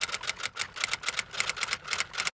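Typewriter keys clacking in a quick, even run of about seven strokes a second. It is a sound effect that goes with on-screen text typing itself out letter by letter.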